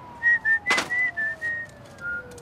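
A tune whistled in short notes that step up and down in pitch, with a sharp click about three-quarters of a second in and a faint tone sliding slowly downward underneath.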